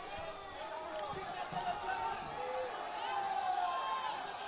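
Live arena audience, many voices shouting and chattering over one another.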